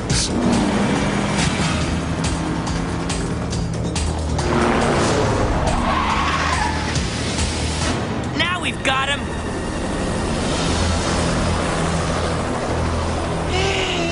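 Action-cartoon soundtrack: music with steady low drones under dense sound effects, including a rushing swell in the middle and a quick run of warbling electronic chirps a little past halfway.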